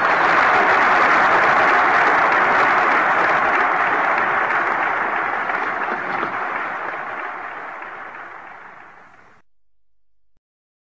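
A large crowd applauding, a dense, even clatter that slowly fades and then cuts off to silence near the end.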